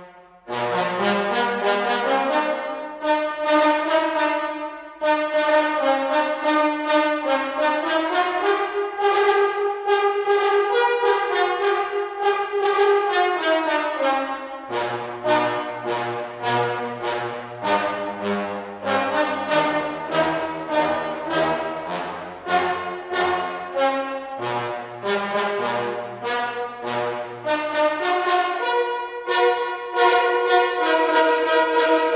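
Sampled tenor trombone pair from Audio Imperia's Fluid Brass virtual instrument, played from a keyboard in fast runs of short, bitey notes. About eight seconds in comes a longer phrase that rises and then falls, and from about halfway lower notes join in under the runs.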